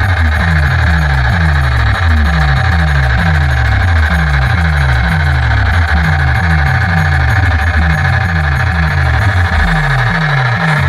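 Loud electronic dance music with heavy bass played through a large DJ speaker stack, a falling bass note repeating about twice a second.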